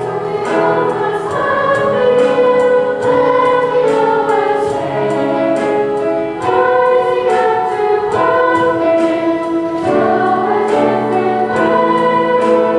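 Children's choir singing a song with accompaniment and a steady beat.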